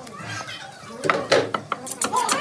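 A few sharp knocks on a wooden chopping block as goat meat and a steel cleaver are handled on it, the loudest about halfway through. Children's voices can be heard in the background.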